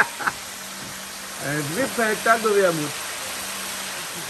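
A voice speaking briefly in the middle, over a steady low hum and the soft, steady hiss of a wok of guinea fowl pieces cooking on the fire.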